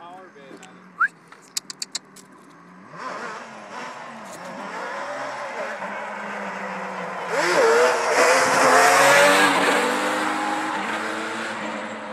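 Yamaha Banshee ATV's two-stroke twin engine approaching under hard throttle, its pitch rising and falling as it revs, loudest as it passes about eight seconds in, then fading into the distance.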